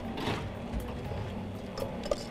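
Low background noise of a studio kitchen: a steady low hum with a few light clicks and knocks of utensils against pots.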